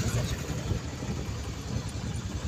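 A motor vehicle's engine running nearby, heard as an uneven low rumble over street noise.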